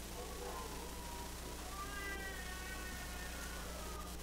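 A faint, high-pitched, drawn-out vocal sound that wavers and falls slightly, strongest in the second half, over a steady low electrical hum.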